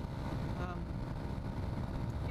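Wind buffeting a helmet-mounted camera's microphone while riding a Yamaha XT250 dual-sport motorcycle at road speed, a steady ragged rumble with the bike's single-cylinder engine running underneath.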